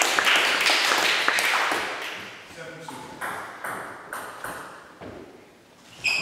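Table tennis ball pinging and bouncing between points, with many quick taps at first, then a few quieter single bounces about half a second apart in the second half.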